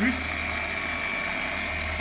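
Electric machine polisher with a foam pad running steadily as it buffs a car's painted body panel: a steady high whine over a low hum.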